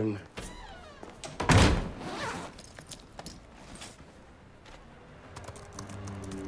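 A wooden door shut hard with a heavy thunk about a second and a half in, after a lighter knock near the start. Near the end come a few light laptop keyboard clicks.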